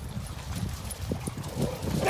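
Irregular soft thumps and scuffs of footsteps and dogs' paws on wet sand.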